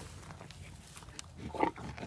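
Quiet outdoor background with a brief, faint animal sound from the livestock crowding the feeder about a second and a half in.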